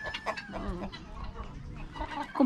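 Chickens clucking softly at close range, with a thin steady high tone that fades out about half a second in.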